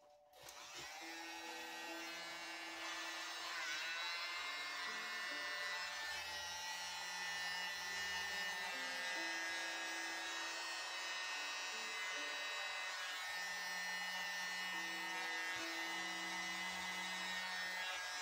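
Small handheld electric motor starting up about half a second in with a rising pitch, then running steadily.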